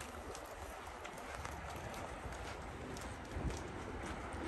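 Faint footsteps of people walking on a concrete parking-garage floor, about two steps a second, over a low steady background hum.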